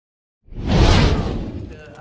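A whoosh sound effect with a heavy low end, starting about half a second in, swelling quickly and fading over the next second: the sound of a channel's animated logo intro.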